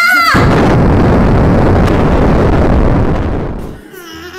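A loud explosion sound effect, a long rumbling blast that comes in sharply just after a short rising whistle and fades out after about three and a half seconds.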